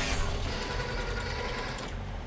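Toy-machine sound effect for a LEGO crane arm moving: a small motor runs with rapid even clicking, about ten clicks a second, over a steady low hum. The clicking starts about half a second in and stops just before the end.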